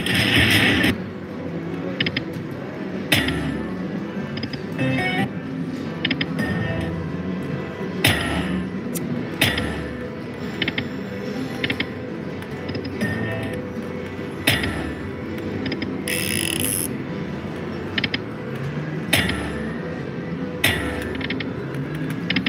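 Wild Chuco video slot machine being spun over and over: its game music and chimes, with short sharp clicks recurring every one to three seconds as spins start and the reels stop, over steady casino background noise.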